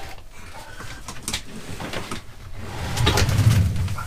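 A wooden under-seat drawer being pulled open with scattered knocks and clicks, then a low rumble as it slides out, loudest near the end.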